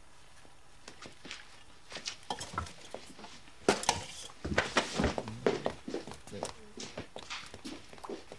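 Scattered light knocks and clicks, busiest around the middle, with a few brief low voice sounds.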